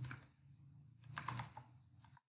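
Faint computer keyboard typing: a click at the start, then a quick run of three or four keystrokes about a second in as a number is typed, over a low steady hum.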